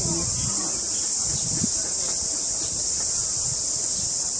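Steady, high-pitched drone of a chorus of insects, unchanging throughout, with a faint low rumble underneath.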